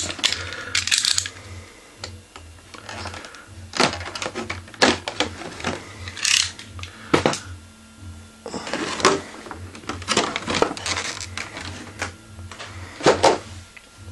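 Clear plastic blister tray being handled and pried apart by hand to free a figure stand: irregular sharp clicks and crackles of stiff plastic flexing and snapping.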